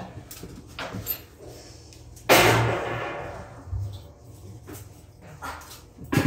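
A single loud metallic clang about two seconds in, ringing and dying away over about a second. A few light knocks come before it, and a dull thud follows about a second and a half later.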